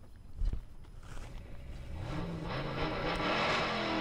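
Car engine revving, rising in pitch and growing louder over the second half: the recorded hot-rod sound effect that opens a pop song played through a speaker. There is a low thump about half a second in.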